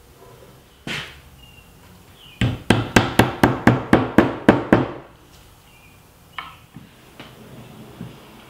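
Claw hammer tapping along a freshly glued walnut biscuit joint, a quick run of about ten strikes at about four a second, knocking the boards flush at the seam. A single knock comes about a second in, and a couple of lighter knocks near the end.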